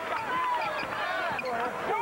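Basketball court sound from a game on a hardwood floor: sneakers squeaking in short, high, sliding tones over crowd voices.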